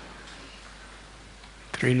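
Faint, even background hiss of the room and microphone during a pause in a man's speech; his voice comes back in near the end.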